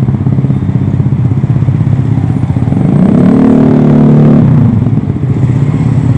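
Engines of road traffic running close by, loud and steady. About three seconds in, one engine rises in pitch as it revs up, holds, then drops away again near the end.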